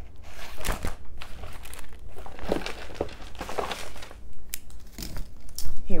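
Crinkling and rustling of things being rummaged through by hand, in irregular bursts with a few sharp knocks, while searching for a handheld fan.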